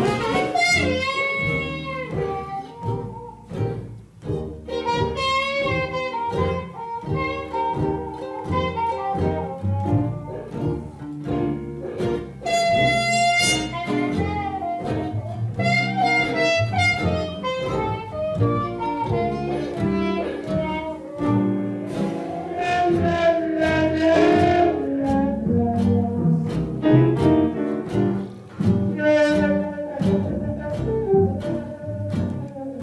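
Small hot-jazz band playing live: a melodic horn solo over a steady walking double bass, with drums, guitar and piano. The solo passes from alto saxophone to a trumpet played with a plunger mute.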